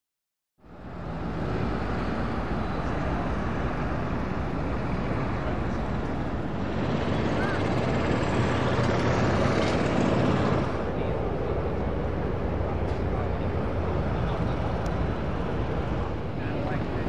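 Open-air ambience on a busy air show ramp: a steady rumbling background with the voices of people milling about. It fades in from silence at the start and swells louder for a few seconds in the middle.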